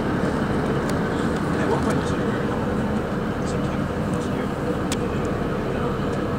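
Steady diesel train rumble and hum heard from inside a railway carriage at a station platform, with a few faint clicks.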